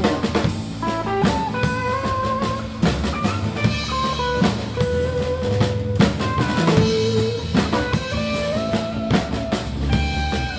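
A live band playing an instrumental passage: a drum kit beating steadily under a lead line of held notes that step and slide in pitch.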